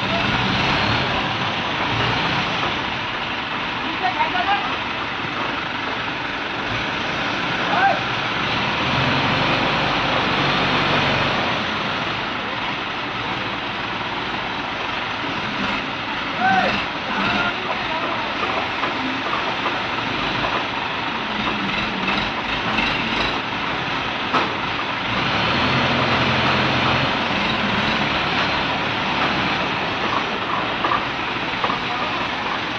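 Diesel engines of two ACE hydra cranes running under load as they lift a transformer, louder in stretches, with workers' voices calling out now and then.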